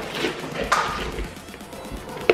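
Clear plastic clamshell packaging of a new cone air filter crinkling and rustling as it is opened by hand, a couple of sharper crackles in the first second, under background music.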